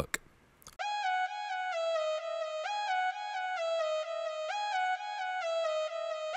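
FL Studio's GMS synthesizer playing a lead melody for a beat's hook: one note at a time, each a buzzy saw-wave tone, moving between pitches a few times a second. It comes in about a second in.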